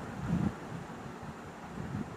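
Low, steady background rumble and microphone noise with no speech, with a brief faint low swell about half a second in.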